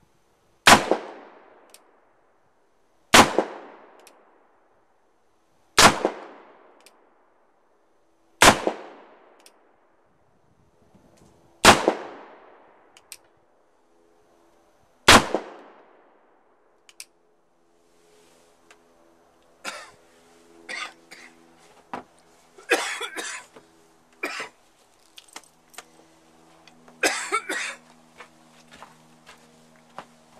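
A cap-and-ball black powder revolver fired six times, a sharp report with a short ringing tail every three seconds or so, leaving a haze of powder smoke. After the shots come quieter scattered knocks and rustling.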